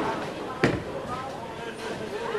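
A bowling ball released at the foul line lands on the wooden lane with a single sharp thud about half a second in, then rolls away under bowling-alley chatter.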